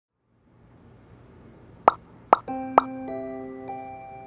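Three quick cartoon plop sound effects about half a second apart, then soft background music begins with steady held notes.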